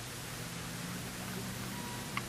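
Steady hiss with a faint low hum, the background noise of the recording between narrated lines.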